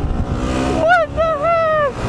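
Yamaha WR250R single-cylinder dual-sport motorcycle running on the road, with wind rushing over the helmet microphone. About halfway through a voice calls out in a drawn-out shout for just under a second.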